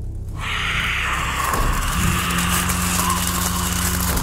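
Low, sustained background-music drone with a steady hissing wash laid over it from about half a second in. A new low held note enters about two seconds in.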